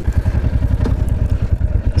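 Royal Enfield Hunter 350's single-cylinder engine running at low revs, an even, rapid low pulsing beat.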